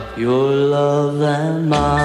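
Late-1950s doo-wop record: the backing band drops out and male voices hold one long sung harmony note without words, wavering slightly near its end. The full band with bass comes back in just before the end.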